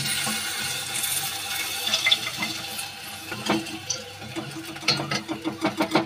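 Hiss and slosh of syrup as hot fried jilapi are pushed into sugar syrup in an aluminium pot, strongest over the first two seconds or so. Then a run of light clicks and knocks from the spatula against the pot.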